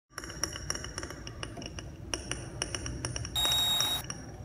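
An irregular patter of small glassy clinks and pings, each with a short high ring. Near the end a louder hiss with a steady high whistle comes in for about half a second and then cuts off.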